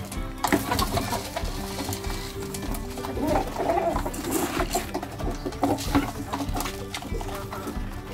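Background music with steady held tones over a flock of chickens clucking and pecking at a wooden feeding trough, with scattered short clicks.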